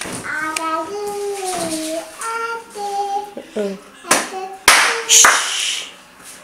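A small child singing in drawn-out, held notes, with a few sharp hand claps about four to five seconds in.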